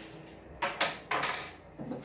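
A few short knocks and clatters of a paint jar and a small container being picked up and handled, with a longer rattle just past a second in.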